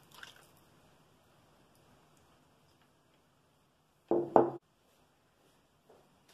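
Vegetable oil poured into a stainless steel mixing bowl, heard as a brief splash at the start before going quiet. About four seconds in come two quick, loud knocks with a short ring.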